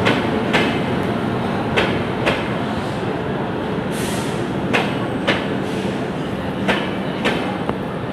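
Passenger train rolling slowly past a station platform with a steady rumble. Its wheels click over a rail joint in pairs about half a second apart, one bogie's two axles after the other, repeating every two to three seconds. There is a brief hiss about four seconds in.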